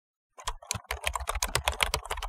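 Computer keyboard typing sound effect: a fast run of keystroke clicks, about eight to ten a second, starting about half a second in.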